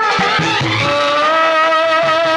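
Bollywood film song: the melody holds one long note from just under a second in, over the accompaniment and a light beat.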